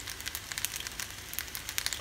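Fusilli pasta frying in a hot pan: a steady sizzle with many small, irregular crackles and pops.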